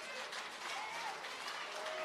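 Audience applauding in a hall: steady clapping, with faint voices from the crowd.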